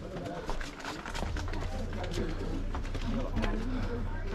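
Footsteps of people walking up a paved path, with indistinct chatter of voices around them. A steady low rumble comes in about a second in.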